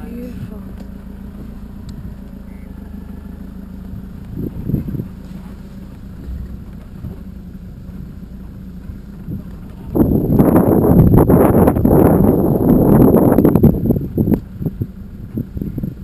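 Steady low hum of an idling open safari vehicle's engine. About ten seconds in, a loud rushing, rustling noise on the microphone for about four seconds, then a few shorter bursts.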